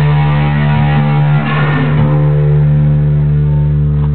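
Rock band's guitar and bass on a final chord that is held and left to ring, after the vocals have stopped. The busy playing gives way about halfway through to the steady sustained chord.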